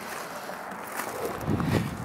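Wind noise on the camera's microphone: a steady hiss, with a short louder low rumble about one and a half seconds in.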